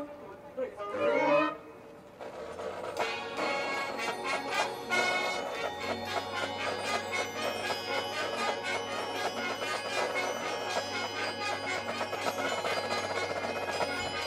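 Marching band playing a slow, building passage that swells in from about two seconds in: dense sustained chords over a steady low bass note.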